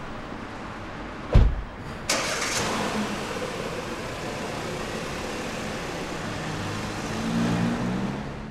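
A car door shuts with a thump about a second and a half in. Half a second later the SUV's engine starts and keeps running, with a deeper hum building near the end as the car moves off.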